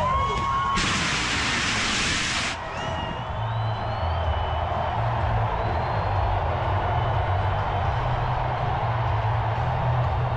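Stadium crowd noise mixed with music over the public-address system. About a second in, a loud hiss starts abruptly, lasts about a second and a half, and cuts off sharply.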